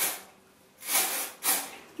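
Batiste dry shampoo aerosol can spraying in three short hissing bursts: a brief one at the start, then two more about a second in and halfway through the second second.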